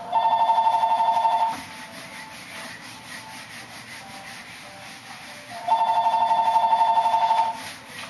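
A telephone ringing twice, each a warbling ring of about a second and a half to two seconds, some four seconds apart. Between the rings, an eraser rubs on a whiteboard.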